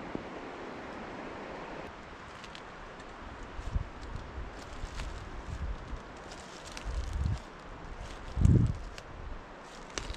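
Footsteps slowly crunching over wet fallen leaves on a forest floor, with low gusts of wind buffeting the microphone, the strongest a little before the end.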